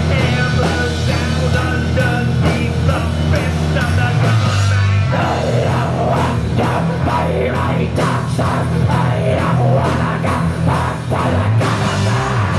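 Live heavy rock band playing loud: distorted electric guitar, electric bass and drum kit. About five seconds in the drumming gets busier, with dense, sharp hits.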